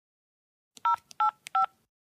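Keypad beeps of a handheld card payment terminal as a PIN is typed in: three short two-tone beeps about a third of a second apart, starting a little before the middle.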